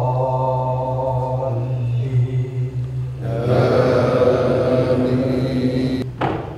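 Male voice chanting an Arabic supplication in long, drawn-out notes. About three seconds in, the chant becomes fuller and a little louder.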